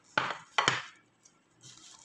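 Two short clatters of kitchen dishes or utensils being handled, about half a second apart, in the first second.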